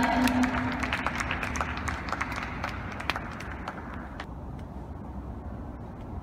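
Spectators applauding after a point: scattered hand claps that die away over about four seconds, with a voice's call trailing off at the very start.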